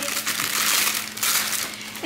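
Thin plastic packaging of a stack of brown rice cakes crinkling as it is handled to pull out a rice cake, a continuous crackle that eases off near the end.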